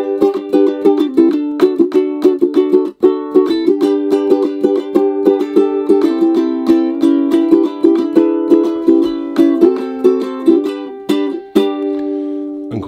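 Luna Henna Dragon concert ukulele strummed in chords, a brisk steady strum with a short break about three seconds in. Very muffled, with a laminate, boxy, echo tone and not much volume.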